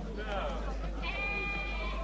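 Sheep bleating: a few short wavering calls, then one long, steady bleat about a second in.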